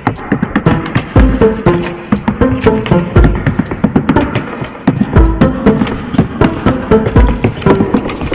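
Hiking boots tap-dancing on wooden boards, a quick run of sharp clicks and stamps. Under them runs a backing music track with a tune and a deep beat about every two seconds.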